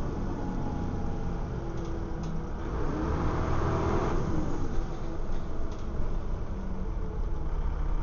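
Dennis Trident double-decker bus's diesel engine and drivetrain heard from inside the passenger saloon as the bus drives. The engine note rises from about two and a half seconds in, then drops around four seconds in, like a gear change.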